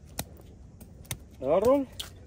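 Grape-harvest hand shears snipping, two sharp clicks about a second apart; a brief voice sounds near the end.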